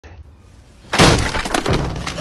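A sudden loud crash about a second in, followed by a second of rapid clattering, as an Alaskan Klee Kai bursts the wooden bedroom door open.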